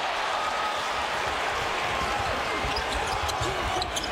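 Basketball arena crowd noise during live play, with a few basketball bounces on the hardwood court.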